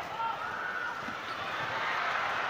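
Indoor arena crowd noise during a volleyball rally: a steady din of many voices, with a few faint ball hits.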